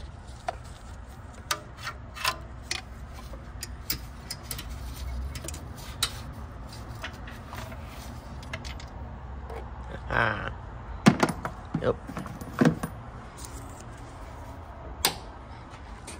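Scattered light metallic clicks and clinks of hand tools and parts being handled around a car's engine, with a louder cluster of knocks about ten to thirteen seconds in, over a steady low background rumble.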